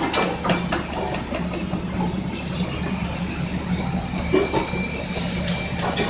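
A steady low mechanical drone fills a commercial kitchen, over the hiss of a marinated steak sizzling and flaring on a ridged grill pan over a gas burner, with a few light knocks.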